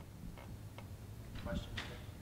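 A few faint clicks and knocks from a handheld microphone being handled and set down on a table, over quiet room tone.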